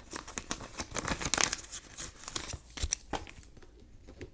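Clear plastic sticker sleeves and sticker sheets crinkling as they are handled, with a small sticker label being peeled off. The crackle is dense for about three seconds and dies down near the end.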